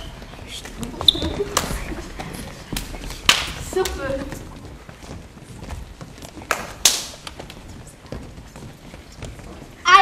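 Children moving about on a wooden stage, with scattered thumps and knocks from their feet and hands and a faint murmur of voices.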